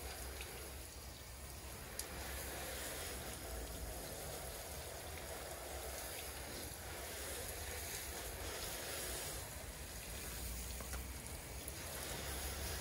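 Garden hose spray nozzle spraying water onto a car's side panels, a steady hiss with a low wind rumble on the microphone and a single click about two seconds in.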